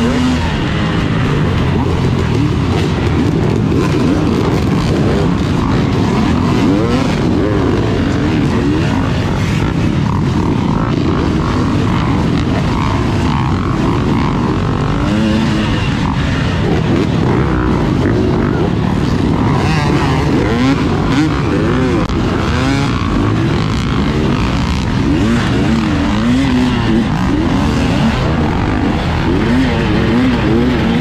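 KTM dirt bike engine at race pace, its pitch rising and falling again and again as the rider revs up and shifts, with other dirt bikes running close ahead.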